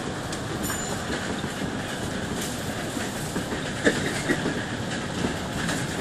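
Steady running noise inside a moving bus, its engine and tyres on a wet road, with a few short knocks and rattles about four seconds in.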